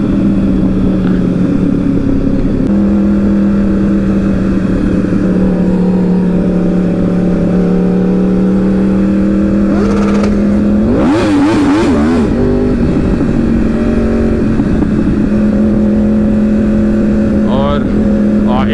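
Sport motorcycle engine running at a steady cruising speed under the rider, a constant drone that drops slightly in pitch about three seconds in and rises again about thirteen seconds in. A short wavering sound breaks in about eleven seconds in.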